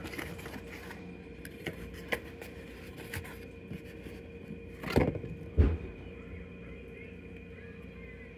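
A small cardboard box being handled by hand while a DeWalt battery pack is pulled out of it. There are soft rustles and clicks of cardboard and plastic, with a couple of louder knocks about five seconds in, over a faint steady hum.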